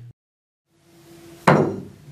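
A single sharp click about one and a half seconds in: the cue tip striking the cue ball on an elevated-cue swerve shot. The first second is near silence.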